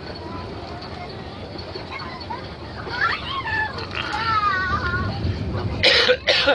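Steady running rumble of a passenger train heard from inside the carriage, with indistinct passenger voices rising over it in the second half and two short sharp bursts right at the end.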